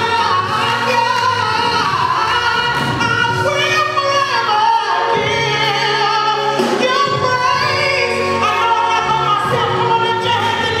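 A woman singing a gospel solo into a microphone, with long held notes and sliding vocal runs, over sustained musical accompaniment.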